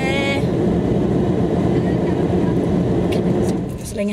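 Loud, steady vehicle noise from outside a parked car, heavy in the low end and loud enough to drown out speech, dying away in the last half second.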